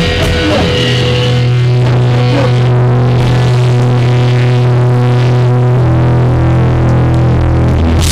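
Live hardcore punk band's distorted electric guitars and bass holding long, ringing low notes with little drumming, moving to a different note about six seconds in.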